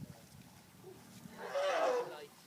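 An African elephant trumpeting once near the end: a short, harsh, brassy blast lasting under a second.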